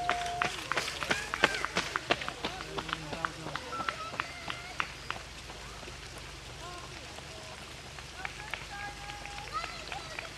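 A runner's shoes slapping on a wet tarmac lane, about three footfalls a second, loud at first and fading away over the first five seconds as the runner moves off. Short chirping notes sound throughout.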